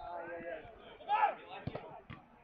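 Men's voices calling out across an outdoor football pitch, twice, fainter than the shouting just before and after, with one short sharp knock a little before the end.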